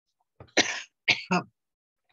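A man coughing and clearing his throat in three short bursts about half a second to a second and a half in, fist at his mouth. He blames the coughing on a drink of water.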